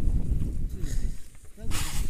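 Wind buffeting the microphone of a camera on a tandem paraglider as it comes in to land, dying away about a second and a half in, followed near the end by a short loud rush of noise.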